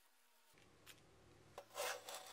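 A steel angle moved on a tabletop, giving a short scraping rub near the end, after a faint click about a second in.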